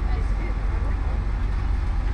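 Steady low rumble inside the cabin of a coach bus standing with its engine idling.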